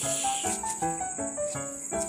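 Background music: a light melody of short notes changing several times a second, over a steady high insect trill.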